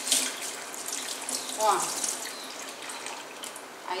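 Kitchen tap running, its stream splashing over a bunch of fresh coriander being rinsed by hand in a stainless steel sink.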